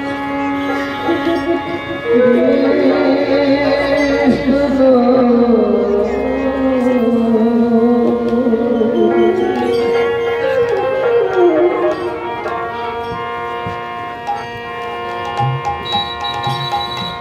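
Devotional raga kirtan: a male lead singer holds long, wavering, ornamented lines over steady harmonium drones and violin, with khol drums accompanying. The voice steps up in pitch and loudness about two seconds in.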